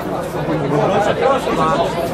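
Many men's voices calling and shouting over one another: a crowd of football supporters.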